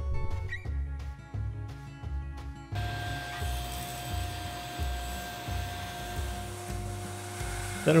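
Background music with a steady low beat. From about three seconds in, a steady hum joins the music.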